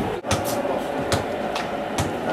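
Steady rumble and road noise inside a moving coach, with a few short knocks of the camcorder being handled. The sound cuts out for an instant shortly after the start.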